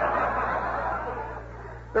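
A small live audience laughing together, a mass of voices rather than one laugh, dying away over the second half.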